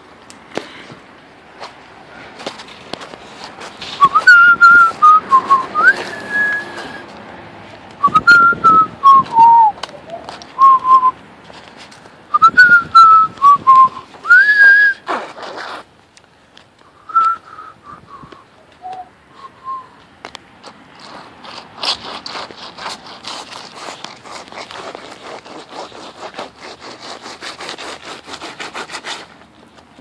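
A person whistling a tune in short phrases, the notes sliding up and down. Near the end come about eight seconds of quick, even footsteps.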